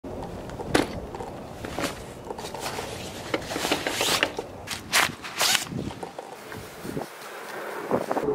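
Footsteps on a stone patio, a sharp step about a second apart, followed by fabric rustling and knocking as a backpack is opened and its contents pulled out.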